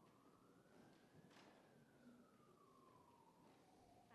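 Faint emergency-vehicle siren in a slow wail, rising in pitch then falling, with a soft click about a third of the way through.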